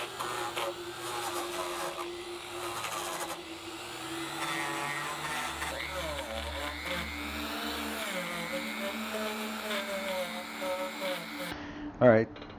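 Die grinder fitted with a wire wheel, running and brushing over carved cypress wood, with a steady motor hum under a whine that wavers in pitch as the speed and load shift. The sound changes abruptly about half a second before the end.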